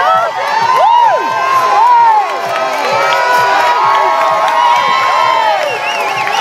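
Large roadside crowd cheering and shouting, many high voices whooping and calling out over one another without a break.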